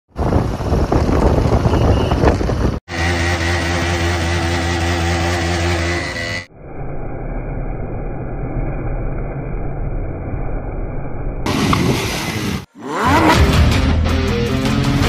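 Motorcycle engines in several short clips joined by abrupt cuts: riding along a road, then an engine held at a steady high pitch, then a rougher stretch during a wheelie run. In the last second a different rising revving sound begins.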